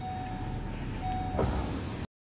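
Car cabin noise: the engine and road running with a steady low rumble, a faint steady tone coming and going, and a short knock about one and a half seconds in.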